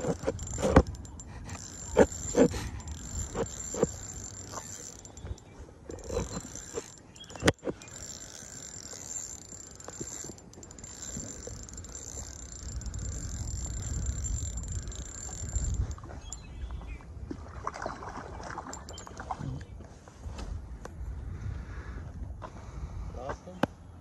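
Handling noise from a spinning reel worked by hand right at the microphone: scattered knocks and clicks, with one sharp click about seven and a half seconds in. A steady high-pitched insect trill runs under it until past the middle, with some low wind rumble.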